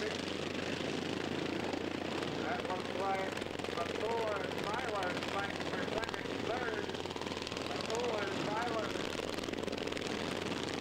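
Several racing lawn mowers with governed single-cylinder engines running together around a dirt track. Their engine pitches rise and fall repeatedly as the machines pass and work through the turns.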